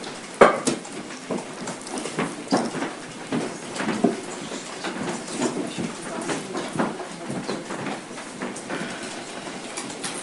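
Hearing-room clatter as people move about: irregular light knocks, taps and shuffling, several a second, over a steady room hiss.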